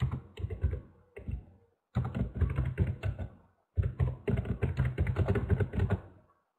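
Typing on a computer keyboard: runs of rapid keystrokes separated by short pauses, with the longest run in the second half.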